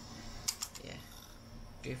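UHER 4000 L reel-to-reel tape recorder running on its replacement motor with a faint steady hum, and a sharp click about half a second in, followed by a few lighter clicks, as a control is switched to a different speed.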